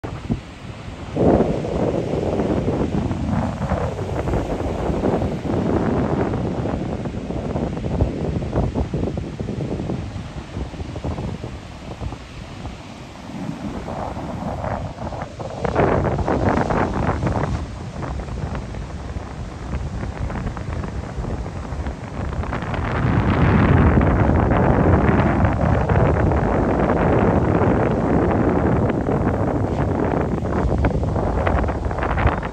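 Wind buffeting a phone microphone over ocean surf breaking on a sandy beach, rising and falling in gusts and loudest in the last several seconds.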